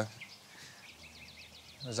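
Songbirds chirping in woodland: a run of short, quick, high chirps, faint under the dialogue.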